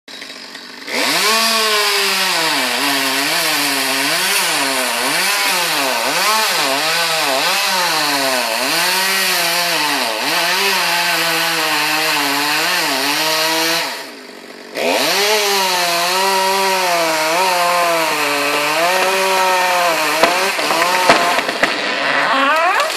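A chainsaw runs at high revs while cutting into a tree trunk, its engine pitch dipping and climbing again and again as the chain bites into the wood. It breaks off briefly a little after halfway, then starts again, and a few sharp cracks come near the end.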